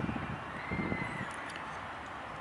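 Outdoor ambience with an uneven low rumble of wind buffeting the microphone, and a faint thin whistle rising and falling about half a second in.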